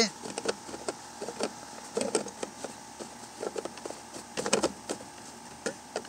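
Scattered soft clicks and rubbing as hands work plastic fuel hoses onto the carburetor fittings of a Poulan Pro 25cc pole saw, over a faint steady hum.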